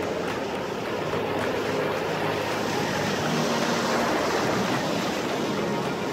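Ocean surf breaking and washing up a sandy beach: a steady rushing hiss of waves and foam.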